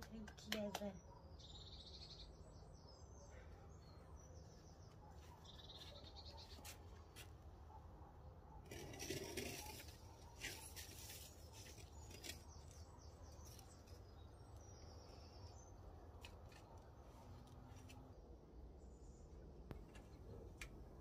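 Faint birds chirping and trilling now and then against near silence, with scattered light clicks and a brief louder noise about nine seconds in.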